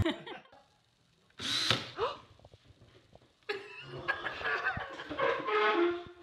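Cordless drill motor spun briefly: a short rising whine about a second and a half in. A longer, uneven stretch of sound follows from about three and a half seconds in.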